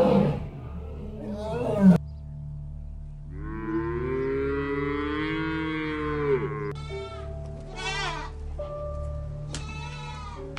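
A cow mooing in one long call, followed by a goat bleating in several short, wavering calls, over a steady ambient music drone. A loud animal call before them cuts off abruptly about two seconds in.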